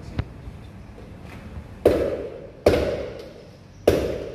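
Espresso portafilter knocked three times against a knock box to empty the spent coffee puck, each knock sharp with a short ringing decay. A light click comes just after the start.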